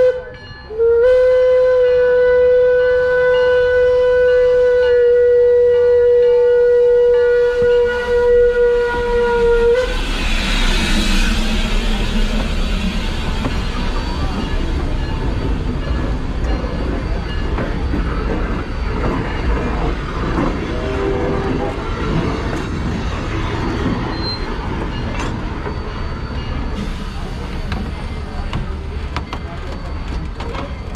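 Steam locomotive whistle blown in one long steady blast of about nine seconds. Then the train rolls overhead, with a low rumble of wheels on the rails and scattered clicks and clanks from the running gear.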